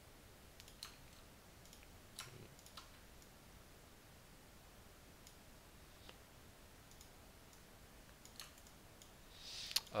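Faint, scattered computer mouse clicks, about eight in all, over quiet room tone, with a short breath near the end.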